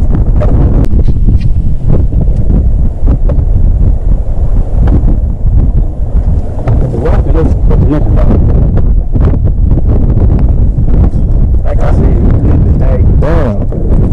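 Wind buffeting the microphone, a loud continuous low rumble, with scattered knocks and muffled voices that are clearest near the end.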